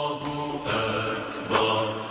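Chanted religious recitation: voices holding long, steady notes that change every half second or so, growing louder about one and a half seconds in.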